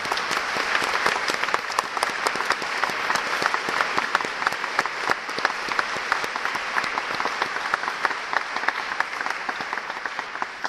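Concert audience applauding: dense, steady clapping from many hands.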